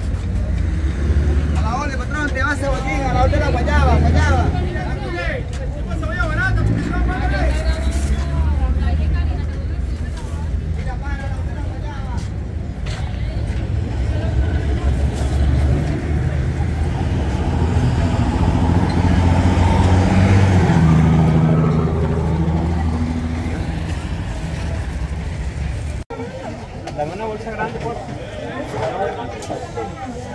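Busy market and street ambience: unintelligible voices talking in the background over a steady low rumble of vehicle engines from passing traffic, swelling louder in the second half.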